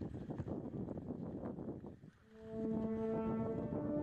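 Background score music: a dense, rough noisy passage fades out about two seconds in, then low brass chords enter and are held steady.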